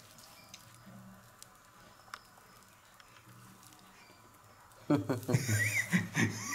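Quiet room sound with a few faint, sharp clicks, then a person's voice starting loudly about five seconds in.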